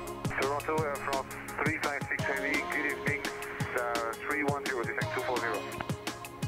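Background music: a song with a steady drum beat and a vocal line over it.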